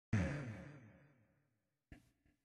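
A single chord struck on a musical instrument, ringing and fading away over about a second and a half, followed by a short click near the end.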